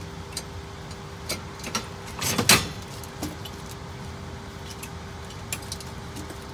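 A plastic grabber tool picking through dumpster debris: scattered clicks and knocks as its jaws and the trash shift, with a louder clatter about two and a half seconds in, over a steady hum.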